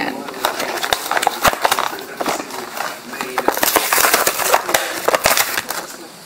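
Plastic packaging being opened and handled close by: a dense run of irregular crinkles, crackles and rustles, busiest in the second half.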